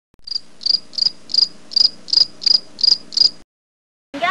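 Cricket chirping sound effect: nine short, even, high chirps at about three a second, starting and stopping abruptly with dead silence either side.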